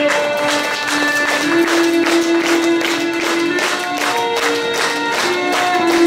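Live neofolk instrumental: a violin plays a slow melody of long held notes over a sustained low note, while a frame drum is struck in a steady beat of about three or four strokes a second.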